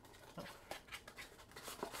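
Faint scraping and rustling of a paperboard retail box, with a few light clicks, as a plastic deck box is slid out of its packaging by hand.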